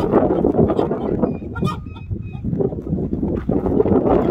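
Chickens squawking angrily. The sound is loudest at the start, eases off about halfway through, and picks up again near the end.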